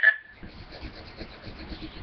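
Faint rubbing and scratching from a phone being handled close to the microphone, just after a word ends.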